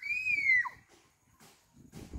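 A single short, high-pitched squeal that rises, holds, then drops in pitch, over in under a second.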